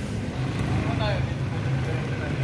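Steady low hum of a motor vehicle's engine running nearby, with a faint voice briefly about halfway through.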